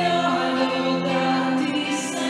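Hymn sung by a group of voices, held notes moving slowly from pitch to pitch.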